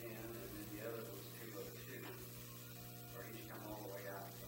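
Faint, indistinct talk among several people in a small room, over a steady low electrical hum.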